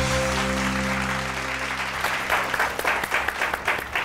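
Background music with held notes fading out over the first two seconds while applause rises, turning into distinct hand claps in the second half.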